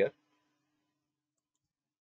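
A man's voice ending a word, then near silence: room tone.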